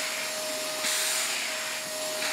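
Shark Mess Master wet/dry portable vacuum running, a steady motor whine over a rushing hiss. About a second in, the hiss turns brighter and harsher.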